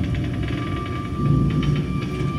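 Suspenseful film underscore: a low rumbling drone with a thin, high held tone coming in about half a second in.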